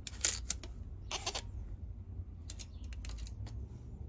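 Light clicks and scrapes from a steel tape measure and gloved hands handling a plastic-and-metal hand saw, in a few short clusters.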